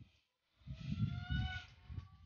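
A farm animal's bleat, about a second long and rising slightly in pitch, over the low rustle of a straw broom sweeping the shed floor.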